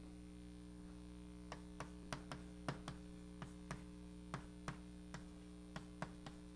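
Chalk clicking and tapping on a blackboard as a line is written: a run of short, sharp, irregular clicks starting about a second and a half in, over a steady electrical hum.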